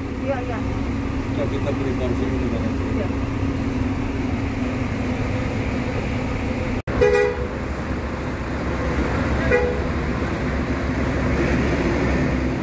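Bus diesel engine idling with a steady low hum. Two short vehicle-horn toots sound partway through, a couple of seconds apart.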